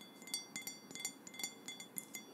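Fingernails tapping lightly and irregularly on a crystal glass, about five or six small clinks a second, each leaving a short bright ring.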